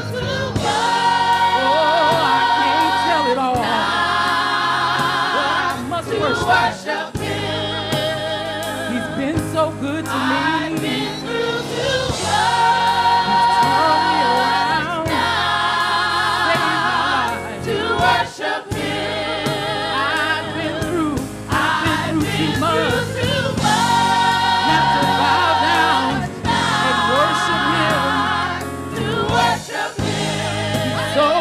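Gospel choir singing in full voice with a lead soloist and instrumental backing, in repeating phrases of long held notes over a steady bass.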